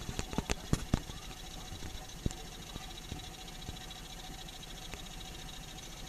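Small boat engine running so quietly that it is barely audible, a steady low hum and hiss. A few sharp knocks come in the first second, and one more about two seconds in.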